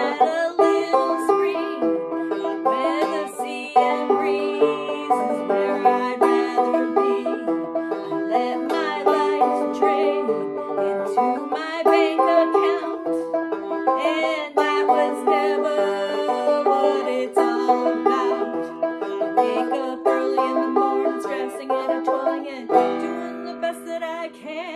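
Banjo picked and strummed in a lively folk tune, with a chord left ringing near the end.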